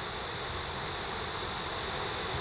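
Cicada singing: a steady, unbroken buzzing drone. It is the male's mating song, made by flexing its tymbals back and forth very fast.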